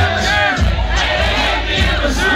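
Packed club crowd shouting and cheering over loud hip-hop music with a heavy bass line; a deep bass note slides down about half a second in.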